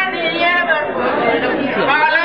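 Crowd of people talking over one another, several voices at once.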